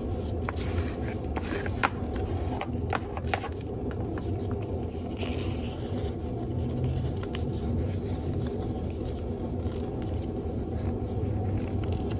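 Paper being handled, folded and creased by hand: a run of short, crisp paper clicks and crinkles in the first few seconds, then a longer scrape about five seconds in, over a steady low rumble.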